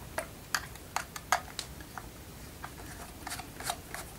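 Light, irregular clicks of a small Pozidriv screwdriver working in the screws that hold a traffic light's plastic lens, as the screws are undone; about a dozen small ticks.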